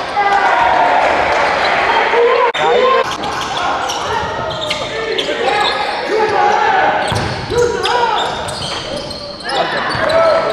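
Live basketball game in a gym: players' and onlookers' voices, shouting and talking over one another, mixed with the ball bouncing on the hardwood floor, all echoing in the large hall.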